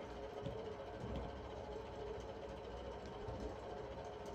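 Faint steady background hum and low rumble, room tone with no clear event in it.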